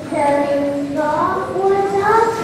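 A child singing, with long held notes that slide up and down in pitch.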